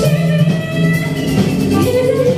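Live band playing amplified music through a PA system, with drums and other band instruments.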